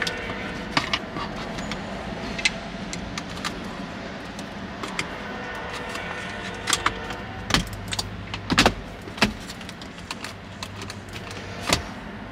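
Plastic center-console trim panels and a pry tool clicking and knocking as the trim is worked loose to reach the All Terrain control module, with the louder knocks in the second half, over a steady low hum.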